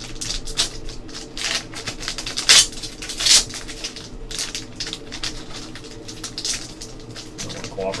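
Foil wrapper of a trading card pack crinkling and tearing as it is pulled open by hand: a run of crackles, with two louder rips about two and a half and three and a half seconds in.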